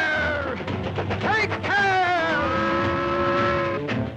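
Cartoon steam locomotive's whistle: a wailing pitched call that slides up and down a few times, then holds one steady note for over a second before cutting off just before the end, over the film's orchestral score.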